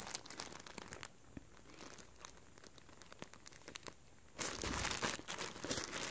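Clear plastic polybag crinkling as the folded flannel shirt sealed inside it is handled and turned over. Faint, with a quieter stretch in the middle and denser crinkling again from about four seconds in.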